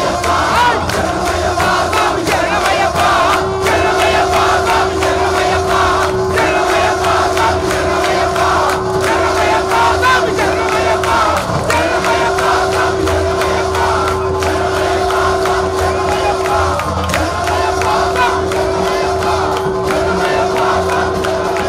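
A crowd of devotees singing and chanting an Ayyappa devotional song together, with a steady held note running underneath that breaks off briefly twice.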